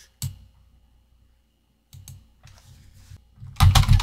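Typing on a computer keyboard: a short run of faint, soft keystrokes about two seconds in, after a single click just after the start.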